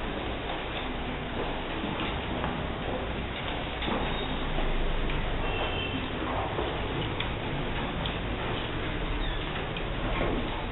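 Classroom room noise with scattered light clicks and small handling sounds from children working at wooden desks, writing and handling abacuses during a test.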